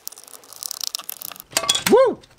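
Light plastic clicks and scrapes as the case of an RC car transmitter is handled and pried open with a screwdriver, with a louder cluster of clicks and a short rising-and-falling squeak near the end.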